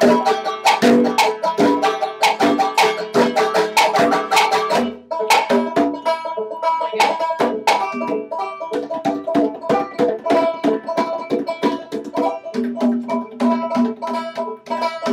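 Banjo being picked together with hand drumming on congas; about five seconds in the drumming drops away after a brief break, and the banjo carries on picking a repeating pattern.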